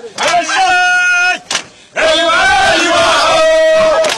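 Marching men's shouted chant: one voice calls out a long shout, a single sharp crack follows, then the group answers together, ending on a held note.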